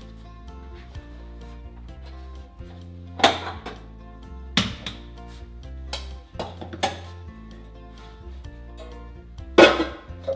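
Several sharp metallic clatters as a bread machine's lid and metal baking pan are handled with oven mitts and the baked loaf is tipped out. The loudest clatters come a few seconds in and near the end, over soft background music with sustained notes.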